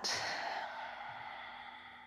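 A person's long, gentle exhale, a breathy sigh that is loudest at the start and fades away over about two seconds. It is the slow out-breath of a deep relaxation breath.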